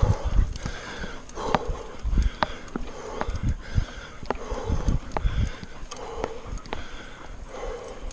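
Heavy rhythmic breathing of a mountain biker riding hard, about one breath a second, over low bumping rumble from the rough dirt trail. Sharp clicks scattered through come from a loose hydration-pack strap flapping against the chest-mounted camera.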